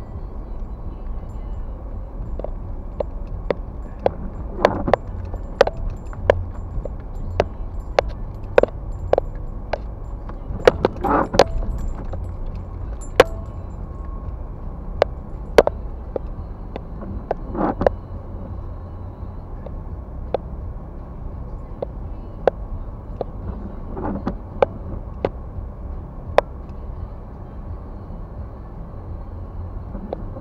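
Car interior on a dashcam: low, steady engine and road rumble as the car moves slowly over a rutted, slushy snow road, with many irregular sharp knocks and rattles. The windshield wipers sweep on an intermittent setting, about every six seconds.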